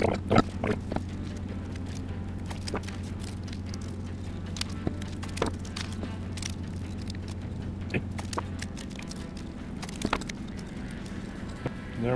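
Handling noises of paper and masking tape being wrapped and pressed onto a steel cylinder sleeve: scattered light taps and rustles. Under them runs a steady low hum that stops about three-quarters of the way through.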